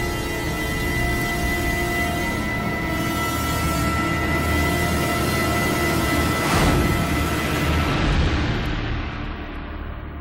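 Dramatic background score: several held tones over a low drone, with a swell about six and a half seconds in, then fading toward the end.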